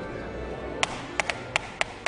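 A quick run of sharp taps, about eight in the last second or so, some in close pairs, over a faint low steady sound in a studio where an orchestra waits to start.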